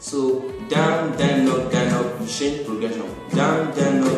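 Acoustic guitar strummed in a down, down, up, down, up pattern, with a voice singing a melody over the chords.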